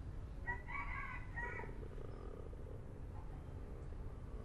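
One pitched animal call, about a second long, starting about half a second in, over a steady low background hum.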